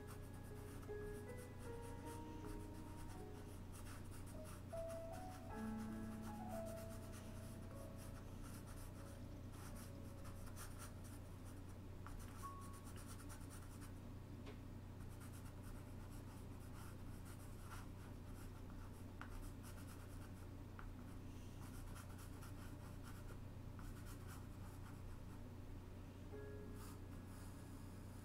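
Pastel pencil scratching lightly over Pastelmat board in short, quick strokes, a faint run of small ticks throughout. A few soft background-music notes sound in the first several seconds over a steady low hum.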